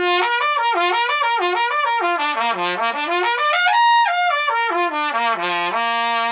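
Trumpet playing a fast slurred flexibility (lip-slur) passage with no breaks between notes. It steps down, climbs to a high note about four seconds in, comes back down and settles on a held low note near the end.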